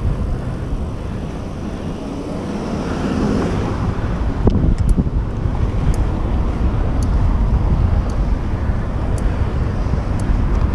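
Wind buffeting the microphone and road rumble from a bicycle being ridden, with a few short sharp clicks from about halfway through.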